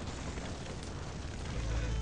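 Open fire burning hot with a steady rushing noise; a low rumble comes in near the end.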